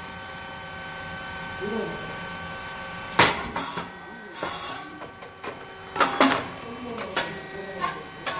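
SYP9002 puffed rice cake machine running a cycle with a steady mechanical hum. A sharp, loud pop comes about three seconds in as the heated twin molds release and the rice puffs, followed by a brief hiss. More sharp clacks and pops come around six and seven seconds.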